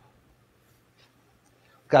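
Near silence: room tone with a faint steady low hum, then a man starts speaking just before the end.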